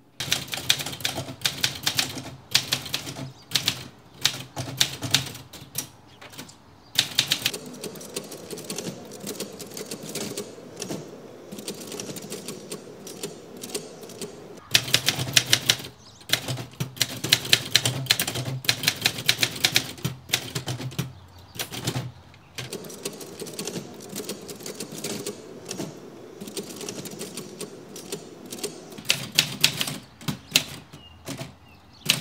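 Typewriter keys struck in fast runs of strikes, with short pauses between the runs.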